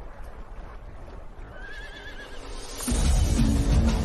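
A horse whinnies once, a short wavering call over a low background rumble, and then loud music with a heavy bass comes in suddenly just before three seconds in.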